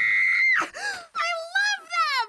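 A girl's long, high-pitched scream of delight, held steady and then breaking off about half a second in, followed by excited squeals that slide down in pitch.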